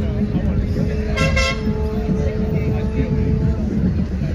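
A horn gives a short, bright toot about a second in, over a lower steady tone held for about three seconds. A constant low rumble of outdoor crowd noise runs underneath.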